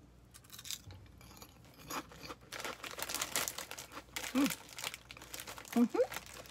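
Crunching and chewing of a crisp cheese-flavoured puffed corn tube snack, a run of dry crackly crunches that is densest in the middle. A brief hum of voice comes in about four and a half seconds in.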